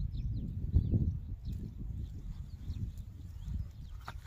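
Faint, short high chirps of small birds scattered throughout, over a rough low rumbling noise that peaks about a second in.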